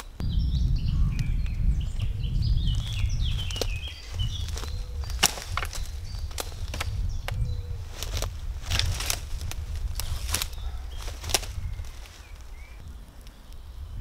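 A series of sharp wooden knocks and clunks as cut hardwood logs are set down and leaned against a fallen branch, over a low rumble and a few bird chirps in the first seconds.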